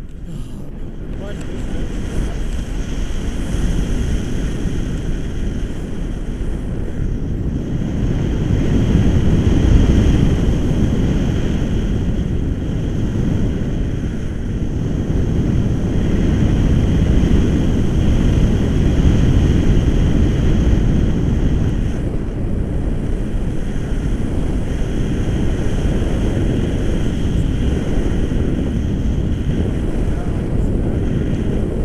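Wind buffeting the camera microphone from the airflow of a paraglider in flight. It is a steady low rush that swells about ten seconds in and again around twenty.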